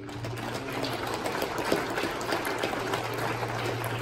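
Congregation applauding: a dense, even patter of many hands clapping, with a low steady hum underneath.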